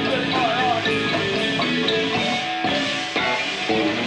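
Live band playing loud progressive rock/metal instrumental music with electric guitar, bass, drums and marimba, with a couple of brief breaks in the second half.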